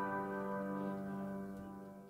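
A held keyboard chord, like an electric piano, slowly dying away and fading out toward the end.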